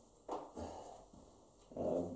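Faint handling noise as a man bends to pick up a motorcycle clutch basket: a short knock about a third of a second in, then his breathing. His voice comes back in near the end.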